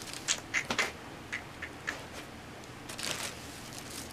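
Faint rummaging: a few light clicks and rustles of bags and packaging being handled, with a soft rustle about three seconds in.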